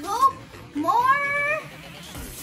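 A girl's wordless voice: a short rising sound at the start, then a longer one about a second in that glides up and holds for under a second.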